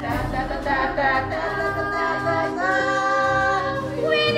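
Music: voices singing a cappella in a choir-like style, with long held notes that slide between pitches.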